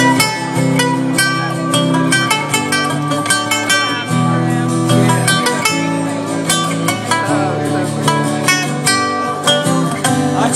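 Electric cigar box guitar taking an instrumental lead break, quick picked single notes ringing out over strummed acoustic guitar chords.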